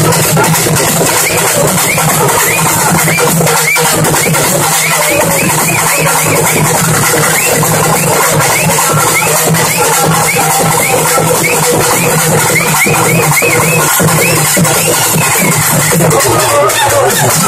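Live urumi melam ensemble playing: the urumi hourglass drums give quick, repeated rising whoops from the stick rubbed on the drumhead, over steady, loud drumming.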